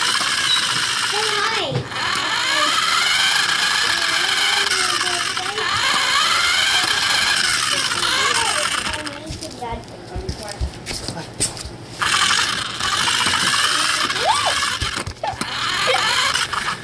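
Toy remote-control car's small electric motor and gears whining as it drives, the pitch rising and falling with its speed; it eases off for a few seconds past the middle, then picks up again.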